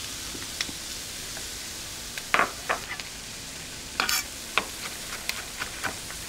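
Garlic and sliced chilli sizzling in olive oil in a frying pan: a steady frying hiss, with a few short sharp clicks over it.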